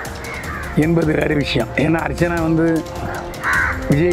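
A man's voice, talking with a laugh in it, over steady background music.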